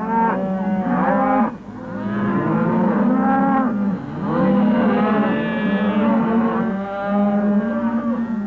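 Cattle mooing: about four long calls one after another, with hardly a break between them.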